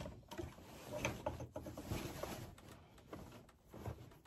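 Quilt layers rustling and sliding across the sewing machine bed as they are turned by hand, with a few faint clicks.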